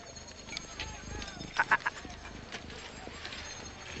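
Market background ambience: a low hubbub with animal calls, and a quick run of three or four sharp chirps about one and a half seconds in.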